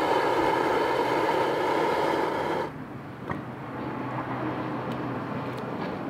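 Outdoor propane turkey-fryer burner running with a steady rush of burning gas, then shut off so that it cuts out suddenly a little under halfway through. A faint single click follows shortly after, over a low steady hum.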